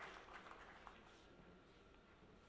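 The last scattered claps of audience applause dying away within the first second, then near silence.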